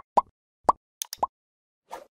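A string of short cartoon-style pop sound effects, four quick upward-sliding pops, with a couple of light clicks between them, from an animated like-and-subscribe button overlay.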